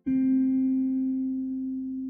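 Slow relaxing guitar music: a single plucked guitar note sounds just after the start and rings on, slowly fading.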